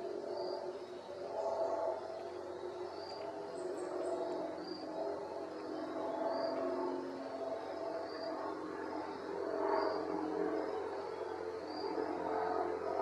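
Outdoor wildlife ambience: a short high chirp repeats about every one and a half seconds over a dense, wavering hum of overlapping low tones.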